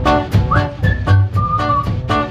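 Swing-style band music: acoustic guitar chords strummed about four times a second over a double bass. Over it a high whistled melody slides up, holds a note, then settles on a lower held note.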